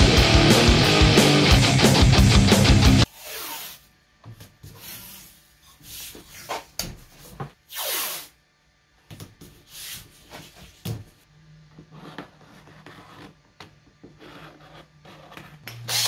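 Guitar-driven intro music that cuts off suddenly about three seconds in. Then masking tape pulled off the roll in short rips and pressed onto a plastic water tank, with light handling knocks.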